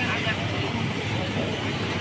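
Fish market ambience: voices of people talking in the background over a steady low rumble.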